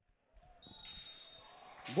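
A referee's whistle sounding one faint, long, steady note from just under a second in, as play starts at the opening faceoff of a roller hockey game, over quiet arena ambience with a few faint low knocks.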